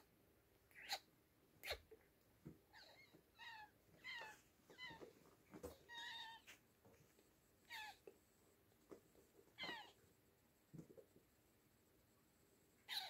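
Oriental kittens mewing: about ten short, faint, high mews, most of them in a quick run through the middle, with a few soft clicks between.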